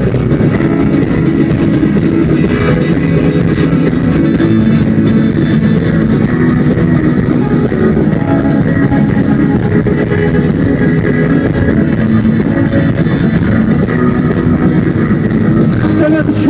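Live rock band playing an instrumental passage: electric guitars, bass guitar and drum kit, loud and steady.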